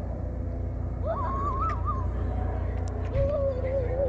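A young child's drawn-out, wavering vocal sounds: a high one held for about a second, then a lower one starting near the end. Under them runs a steady low rumble.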